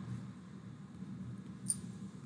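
Faint steady low room hum, with one brief high-pitched tick near the end.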